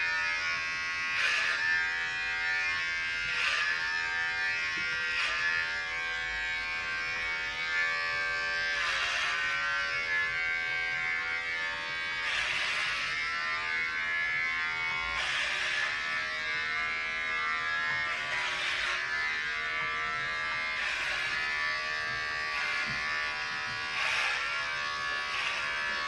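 Corded electric hair clippers running with a steady buzz, the sound shifting briefly every couple of seconds as the blades are drawn through hair.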